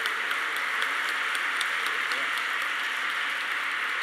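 Audience applauding steadily, a dense, even clapping that carries on without a break.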